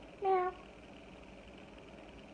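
A single short vocal call, slightly falling in pitch and lasting about a third of a second, about a quarter second in.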